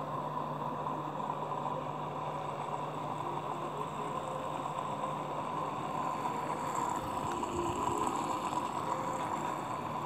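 Aquarium pump running steadily: a constant low hum under an even rushing noise.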